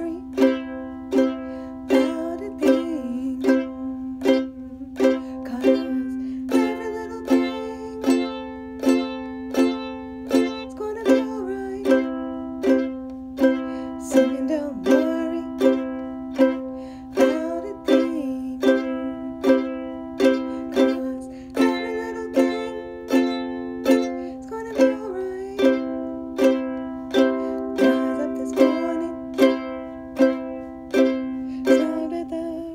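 A ukulele strummed in a steady rhythm, its chords ringing with a sharp strum accent about once a second.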